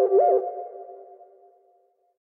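Electronic ringtone: a synthesized tone swooping up and back down about three times a second, a 'woof, woof' warble. It stops about half a second in and its echo fades away over the next second.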